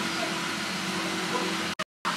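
Steady mechanical hum with a faint low tone, cut off for an instant near the end.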